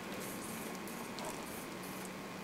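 A few faint, short, high-pitched chirps of bats roosting at the far end of the attic, over a steady low hiss.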